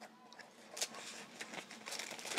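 Faint rustling of paper envelopes and a plastic sleeve being handled as the envelopes are pushed back into their package, with a light click a little under a second in.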